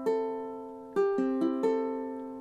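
Ukulele's four open strings plucked one at a time, tuned to standard G-C-E-A, as a reference for a correctly tuned instrument. One string rings near the start, then about a second in four strings are plucked in quick succession, low to high after the first, and left ringing.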